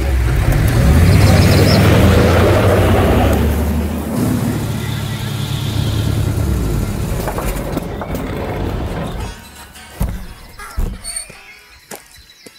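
Pickup truck engine running as the truck drives on a dirt road, then cutting out about nine seconds in, leaving a few scattered knocks: the truck has stalled.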